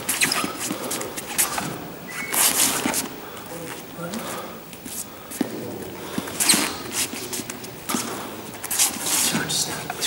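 Sneakers scuffing and squeaking on a sports hall floor as a man steps forward and back through a footwork drill, with a run of short sharp scuffs.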